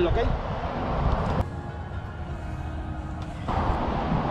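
Wind buffeting the microphone: a low, rumbling noise that drops sharply for about two seconds midway, then returns.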